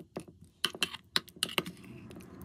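A metal spoon stirring a thick yogurt and fruit mixture in a stainless steel bowl, giving an irregular run of clicks and taps as it knocks the bowl's side, stopping shortly before the end.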